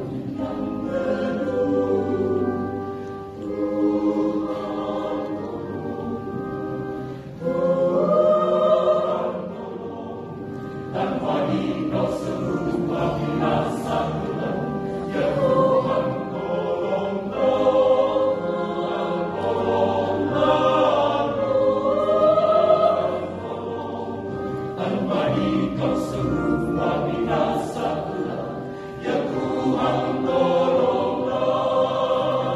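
A mixed choir of men's and women's voices singing in harmony, in long held phrases that swell and ease in loudness.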